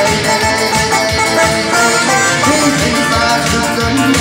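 A live Turkmen song: a man singing into a microphone, amplified through a PA speaker, over an electronic keyboard with a busy percussion rhythm.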